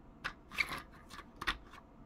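Light clicks and taps of hard plastic toy parts being handled: a 1:18 scale toy truck and trailer moved about and knocked together, with a few sharper clicks and fainter ticks in between.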